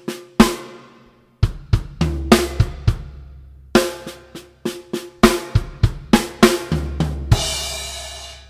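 Acoustic drum kit playing a fill pattern slowly: separated snare and tom strokes with bass drum kicks under them. The pattern is built on six-stroke rolls. Near the end a crash cymbal is struck and rings out.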